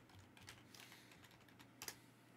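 Faint typing on a computer keyboard: scattered soft key clicks, with a louder pair of clicks near the end.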